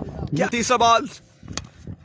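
A single sharp crack about one and a half seconds in: a cricket bat striking a taped tennis ball.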